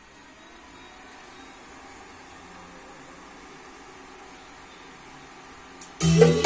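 Steady low hiss of a power amplifier with a switch-mode power supply, switched on and idling with no input signal. A faint click comes just before the end.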